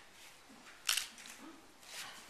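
A single camera shutter click about a second in, over faint room murmur.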